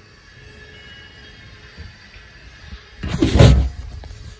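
Faint background with small knocks, then about three seconds in a brief loud rustle and bump of handling noise as the hand-held camera is moved.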